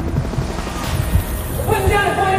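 Helicopter rotor thumping in repeated low beats. A voice begins speaking near the end.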